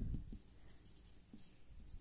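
Marker pen writing on a plastic-covered board: faint, short strokes as the letters are drawn.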